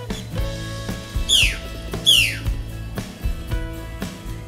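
Background music with a steady beat, over which a bird gives two loud, harsh calls that fall steeply in pitch, about a second and two seconds in.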